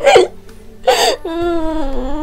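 A girl sobbing: two sharp, gasping catches of breath about a second apart, then a long, wavering, drawn-out wail.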